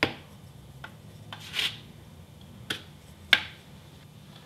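A pencil tapping and prodding a disc of frozen-solid rock-salt ice on a baking tray: a few sharp, spaced taps, with a short scrape about a second and a half in.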